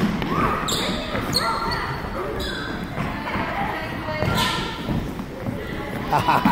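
Children running and calling out in a gym, with footsteps on the wooden floor and their voices echoing around the hall.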